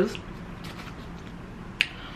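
A single sharp click near the end, against faint room tone.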